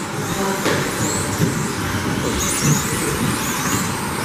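Electric RC buggies in the 17.5-turn brushless class racing on a carpet off-road track. Their high motor whines rise and fall as they accelerate and slow through the corners, over a steady noisy din.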